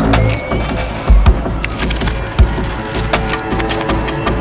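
Loud street noise from a protest: many irregular sharp clicks and knocks and a few heavy thumps, the strongest about a second in. Background music plays under it.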